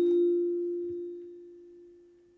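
A single struck metal tone, ringing at one low steady pitch with faint higher overtones and fading away over about two seconds.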